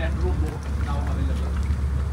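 Low, steady drone of a boat's engine running while the boat moves across open water.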